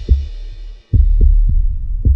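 Deep bass thumps in pairs, about a second apart, over a low rumble, as cinematic title sound design; the sound cuts out briefly just before the middle, then the thumps return.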